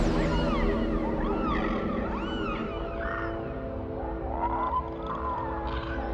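Dolphins whistling underwater: a string of short rising-and-falling whistles, with a longer wavering whistle late on, over sustained orchestral score.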